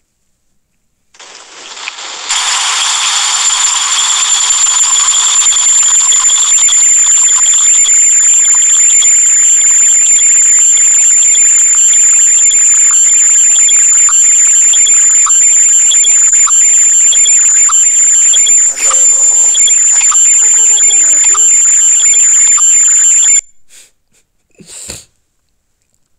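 A loud, steady hissing noise with a shrill high whistle running through it. It starts about a second in, grows louder a second later, and cuts off suddenly near the end, followed by one short burst.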